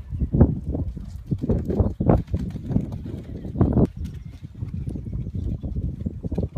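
A pony's hoofbeats on a soft all-weather arena surface as it moves around the ring: a run of irregular, dull thuds.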